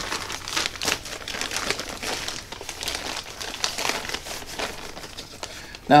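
Plastic zip-top bag holding flour breading crinkling irregularly as it is handled, with the crackling thinning out towards the end.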